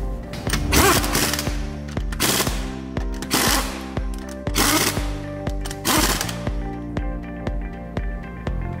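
Pneumatic impact wrench driving the wheel bolts of a refitted car wheel in five short rattling bursts about a second apart, over background music.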